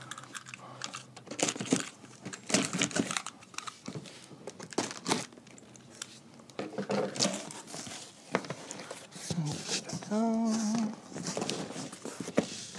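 Packing tape being slit along the top seam of a large cardboard box, then the cardboard flaps pulled apart and folded open: irregular rasps, crinkles and scrapes of tape and cardboard.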